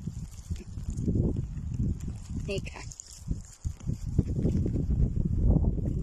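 Rumbling, rubbing noise of a handheld phone's microphone being moved about, with light rustling as a gloved hand picks through low bog shrubs.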